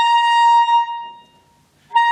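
Alto saxophone (Selmer) playing a single high-register note, held for about a second and fading away, then the same note attacked again near the end. The player tilts the instrument's angle to make the high note speak.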